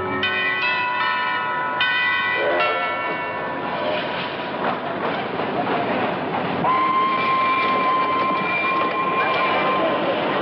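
A few sustained notes of film score, then a steady rush of noise. About seven seconds in, a steam locomotive's whistle blows one long, level note for about three seconds.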